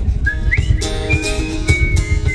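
A whistled melody, a thin pure tone that slides up about half a second in and then holds steady notes, over strummed acoustic guitar.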